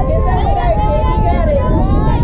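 Several high-pitched voices of softball players calling out and cheering in sliding, drawn-out tones, with no clear words, over a steady low rumble.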